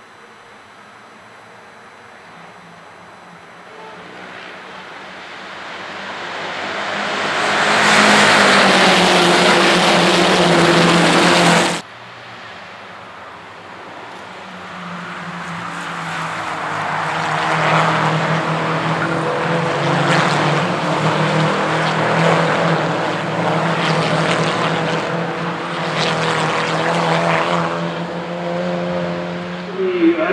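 Škoda Octavia Cup race cars running past in a pack at high revs, several engines overlapping and growing louder as they approach. The sound cuts off suddenly about twelve seconds in, then another group of the cars builds up and passes, engine tones rising and falling as they go by.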